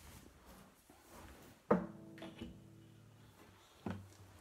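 Gibson Hummingbird acoustic guitar being handled and picked up: a knock on the wooden body about halfway through sets its strings ringing briefly, and a second knock comes near the end.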